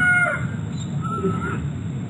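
Bird calls on a documentary soundtrack heard through a video call. A long, held call falls away in the first half second, then a shorter, higher call comes about a second in, over low background noise.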